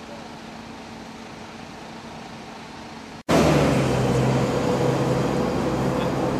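Faint outdoor background with a low hum, then an abrupt cut about three seconds in to loud street traffic, dominated by a vehicle engine running steadily close by.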